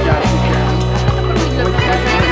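Background music: a held bass note under a wavering, warbling line, with a sharp drum hit about every second.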